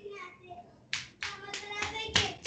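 A quick, irregular run of sharp claps starting about a second in, about four or five in a second, over faint voices.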